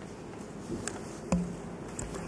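Steady low hum of the room and sound system, with a few brief clicks and rustles from papers being leafed through at a desk microphone. The loudest click comes about halfway through.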